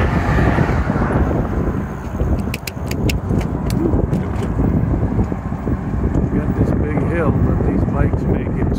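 Wind buffeting the microphone while moving along an open bridge path, with road traffic running alongside. A short run of sharp clicks comes two and a half to three and a half seconds in.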